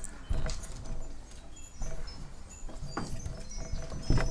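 A quiet lull in a classroom: faint shuffling and a few light knocks as children move about at their tables on a wooden floor.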